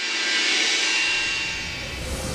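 A loud rushing noise that swells in from silence, peaks about half a second in, then gradually eases off.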